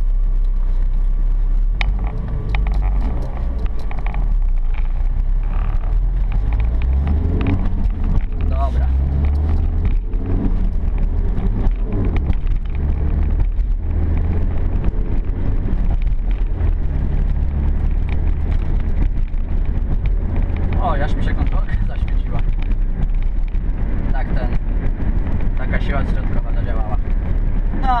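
Car engine drone and road noise heard from inside the cabin of a small car driving through city traffic, the low engine note shifting in pitch a few times as it accelerates.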